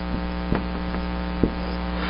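Steady electrical mains hum with its string of overtones, with two faint ticks about half a second and a second and a half in.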